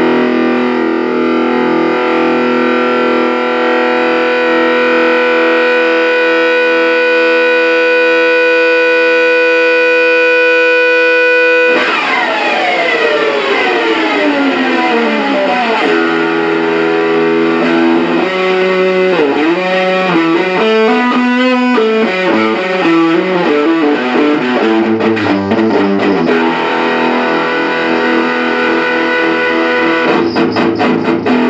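Distorted electric guitar played through a cranked Laney Cub 8 tube amp, driven by a Donner Morpher distortion pedal, into an Eminence Patriot Ragin Cajun speaker. A chord rings out held for about twelve seconds, then a long falling slide in pitch, then a riff of changing notes with bends.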